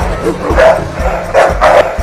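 Dogs fighting, barking in a rapid series of short, loud barks.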